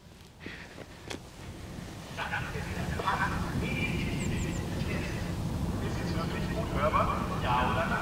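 A man's German announcement over a vehicle-mounted 360° horn loudspeaker (Pass Medientechnik MH-360-4 Streethailer) heard from about 150 m away, starting about two seconds in. It sounds thin and distant but is still plainly heard. Wind rumbles on the microphone throughout.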